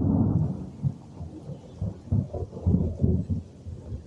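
Thunder rumbling just after a lightning flash: loudest right at the start, then rolling on in several low swells that ease off near the end.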